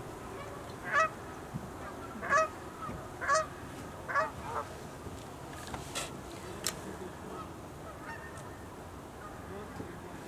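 Sandhill cranes calling: four loud, rolling calls about a second apart in the first half, then quieter.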